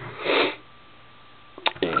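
A person sniffing once through the nose, followed by a short click near the end.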